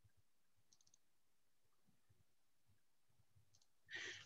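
Near silence on a video call, with a few faint clicks and a brief rise of noise just at the end.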